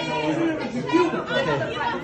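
Several people talking over one another at once, with overlapping voices and no other sound standing out.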